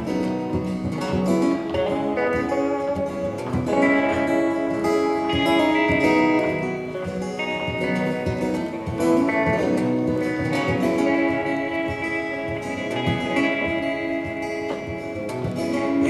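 Instrumental guitar break in a country-folk song: an acoustic guitar strummed steadily while an electric guitar plays melody lines over it.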